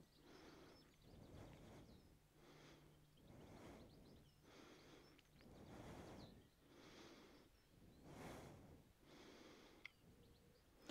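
Faint breathing of a person exercising, a breath roughly once a second, in time with repeated squats into chair pose.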